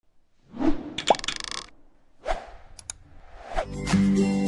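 Animated-graphics sound effects: a series of whooshes and pops, with a short buzzy patch about a second in and two quick clicks near the three-second mark. Acoustic guitar music starts just before the end.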